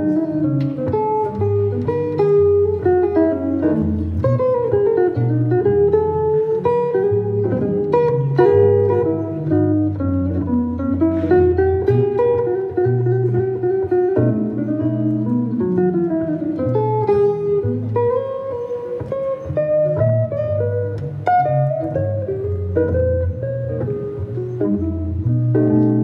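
Solo acoustic guitar playing an instrumental jazz break: a single-note melody line that moves up and down over steady bass notes.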